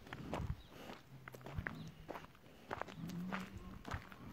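Irregular footsteps on stony dirt ground as a bull is walked across a yard, with two short low hums about a second in and about three seconds in.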